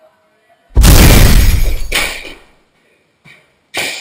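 A sudden, very loud crash with heavy bass about a second in, dying away over the next second, then a smaller hit near the two-second mark.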